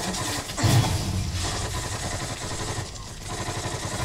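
Battle sound from a war-drama soundtrack: a heavy low boom just under a second in, then a continuous rumbling clatter of gunfire and explosions.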